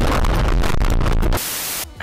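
Dashcam recording of a car crash: loud crunching and banging impacts over rushing wind and road noise. About a second and a half in, it cuts to a short burst of white-noise static.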